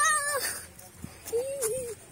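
An animal's wavering, drawn-out call: the tail of a long one ending about half a second in, then a shorter one near the end.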